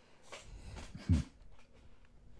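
Faint room noise, then one short, low voiced sound from a person, like a brief 'hm', about a second in.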